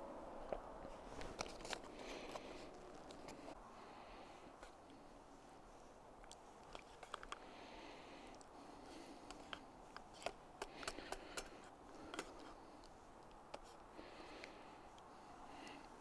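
Faint scattered clicks and scrapes from a spoon stirring tuna into pasta in a stainless steel canteen cup.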